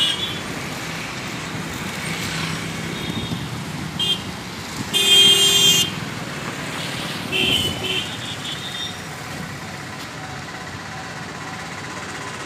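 Street traffic passing, with a vehicle horn sounding for about a second some five seconds in, and shorter toots about four and seven and a half seconds in.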